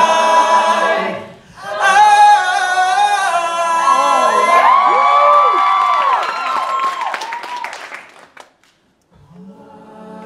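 Mixed a cappella choir singing in close harmony, with a brief break about a second and a half in. The voices then hold a long chord, some gliding in pitch, that fades away around eight seconds, and singing starts again near the end.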